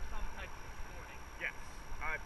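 Faint snatches of voices from the people on the raft over a steady low rumble, in a lull between louder talk.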